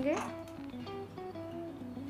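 Background music of plucked guitar notes, a slow sequence of single melody notes.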